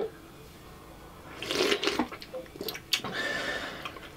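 Wet slurping and sucking as mandarin orange segments and syrup are gulped from small plastic fruit cups, in two noisy spells about a second and a half in and again near the end, with a few sharp clicks between.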